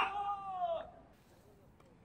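A person's short, drawn-out vocal cry, lasting about a second and falling in pitch at its end.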